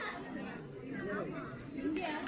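Background chatter: voices of several people talking at a distance, with no single clear speaker.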